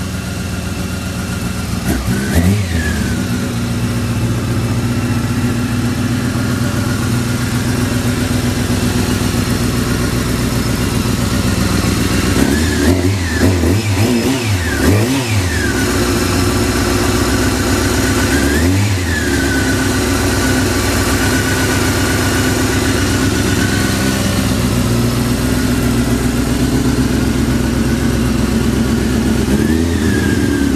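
Honda CBR600F (PC35) inline-four through an Akrapovic aftermarket exhaust, idling steadily and evenly, a sign of a healthy idle. It is blipped with short throttle revs: once about two seconds in, several in quick succession around the middle, once more a little later and once at the very end.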